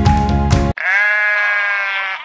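Background music cuts off abruptly, then a farm animal gives one long bleating call that holds steady and weakens near the end.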